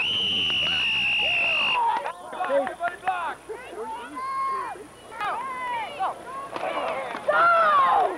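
A referee's whistle sounds one long blast of nearly two seconds, blowing the play dead after a tackle. Spectators and coaches then shout over one another, with a loud yell near the end.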